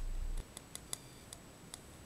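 Fingertip tapping lightly on a microphone's metal mesh grille: faint quick taps, about five a second.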